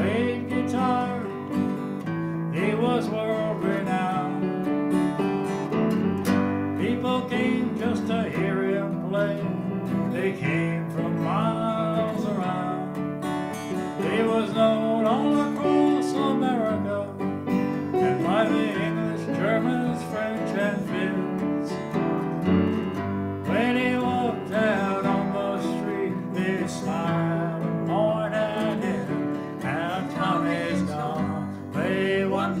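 An acoustic guitar playing a fingerpicked tune, with a steady run of changing notes.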